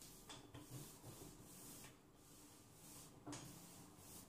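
Faint rubbing and a few light knocks as shortcrust dough is handled and rolled with a wooden rolling pin on a floured wooden board.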